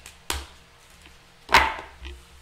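Two sharp slapping knocks from a deck of cards being handled, the second, about one and a half seconds in, the louder.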